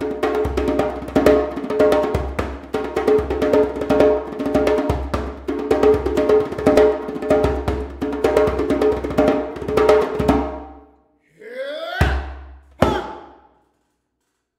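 Djembe played with bare hands in a fast, dense rhythm of strokes, breaking off about ten and a half seconds in. After a short gap, two final loud accents with gliding pitches land about a second apart.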